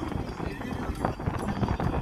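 Irregular rumble and knocking of a vehicle moving along a road, with voices mixed in.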